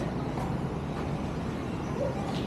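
Steady low rumble of city street ambience with road traffic, no distinct events.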